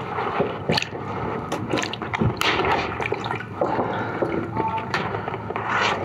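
Water sloshing and splashing in a plastic tub as a large sheet of watercolour paper is bent and pushed into it, with the stiff paper rustling in irregular bursts.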